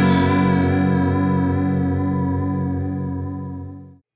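Stratocaster-style electric guitar played through a Landscape Angel Chorus AGC1 chorus pedal: one chord struck and left to ring, wavering slowly and evenly from the chorus as it fades, dying away right at the end.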